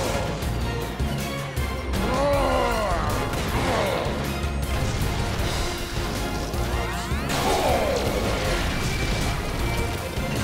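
Sound effects of a giant-robot fistfight: metal smashing and crashing impacts with rising-and-falling mechanical whines, over action music.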